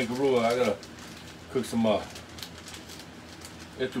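A man's voice making a drawn-out, wavering sound at the start, not clear words, then a shorter, higher voice a little before halfway.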